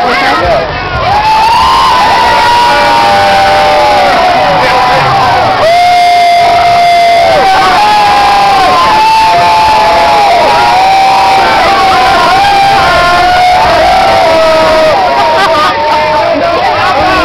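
Loud crowd cheering and shouting, with many voices holding long, high yells that overlap one another.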